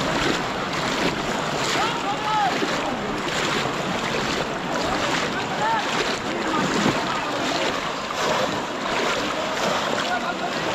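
Water sloshing and splashing as many people wade through a shallow pond, with scattered shouts and calls from the crowd over it.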